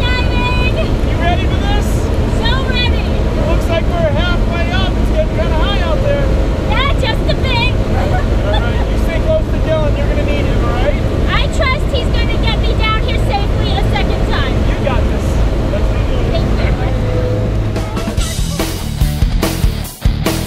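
Steady, loud engine noise of a skydiving jump plane heard inside its cabin during the climb, with voices over it. Rock music comes in near the end.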